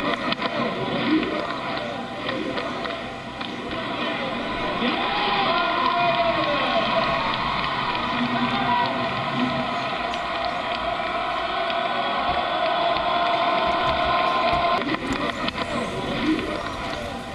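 Golf cart driving along a paved lane: a steady motor hum whose pitch wavers slowly, over continuous outdoor noise.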